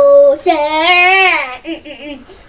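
A young boy singing wordless syllables a cappella: a note held into the start, then a loud note from about half a second in that rises and falls in pitch, ending in a few short choppy syllables.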